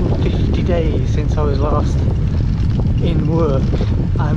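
Wind buffeting the microphone of a handheld camera on a moving bicycle, a steady low rumble, with a man's voice talking over it.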